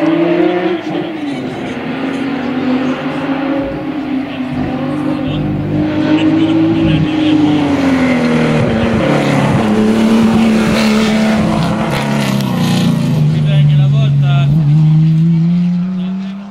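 Porsche 911 SC rally car's air-cooled flat-six engine running hard on a special stage, its pitch rising and falling through gear changes and lifts. Near the end it holds a steady climb.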